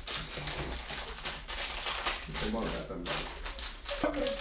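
Low, indistinct voices murmuring, with light rustling and handling noises in the background; no single loud sound stands out.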